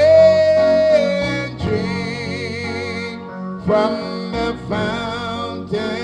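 A man singing a gospel song into a microphone over instrumental accompaniment, holding long notes with vibrato; a loud held note about a second and a half long opens the passage.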